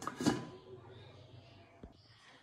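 A stainless-steel lid set back down on a wok: a short metallic clatter with a faint ringing that fades over about a second. A single small click comes near the end.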